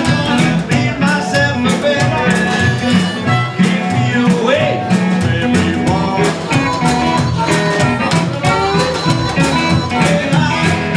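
Live blues band playing with a steady beat: upright double bass, a small drum kit and electric guitar, under a held melodic lead line with a bending note about halfway through.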